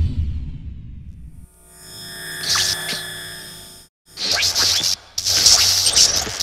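Logo intro sound design: a deep hit fades away over the first second and a half, then a shimmering swell of ringing tones rises and cuts off abruptly just before four seconds in, followed by two loud hissing bursts over a low hum.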